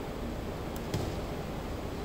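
Steady room noise and hiss in a gap between speakers, with a faint click a little under a second in.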